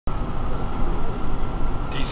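Steady road noise heard from inside a vehicle cruising at highway speed: a continuous low drone of engine and tyres, with a faint steady high whine.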